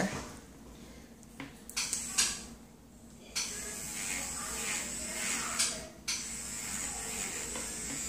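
Electric nail drill handpiece starting up about three seconds in after a few handling clicks, then running with a steady high whine as its bit files a fingernail, dipping briefly near six seconds.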